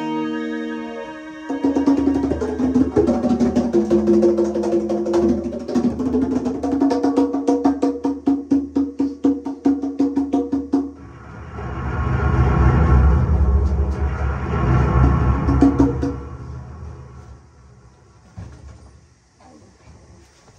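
Drum kit played with fast strokes over a held keyboard chord for about nine seconds, after a moment of keyboard notes alone. Then a loud, low drum roll swells up and fades twice before dying away.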